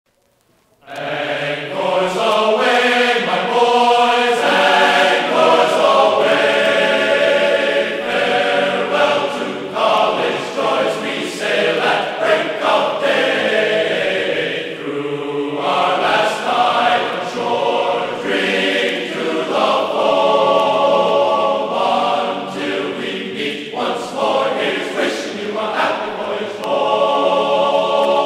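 A choir singing in harmony, many voices holding and changing notes together; it starts abruptly about a second in.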